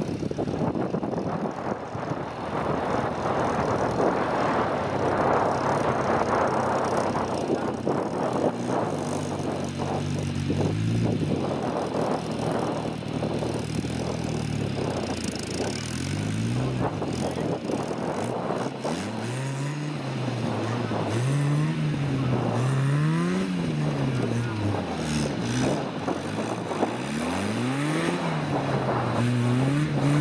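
A small open two-seater trials car's engine revving up and down repeatedly as it struggles for grip on a grassy slope. In the second half the revs surge and drop about every one and a half to two seconds while the rear wheels spin and throw up dust.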